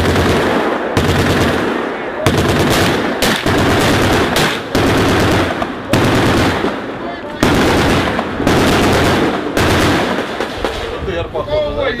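Close, loud automatic gunfire in long bursts of rapid shots, one burst after another with only brief breaks between them.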